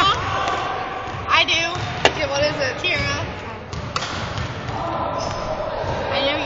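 A basketball bouncing on a gym's wooden floor, one sharp bounce about two seconds in and two more in quick succession near four seconds, under voices and laughter that echo in the hall.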